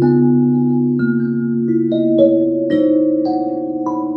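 Array mbira, a board of tuned metal tines, plucked with the fingers in a melody of overlapping notes that ring on, about one or two new notes a second over a low note held throughout.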